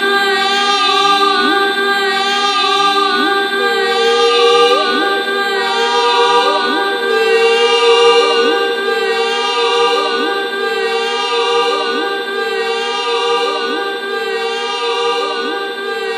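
Wordless a cappella voice improvisation, layered into a choir-like drone of several held tones, with short rising vocal glides repeating at a steady pace beneath it.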